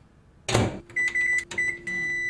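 A microwave oven runs with a steady low hum while its control panel gives a run of short, high beeps. A brief thump about half a second in comes first.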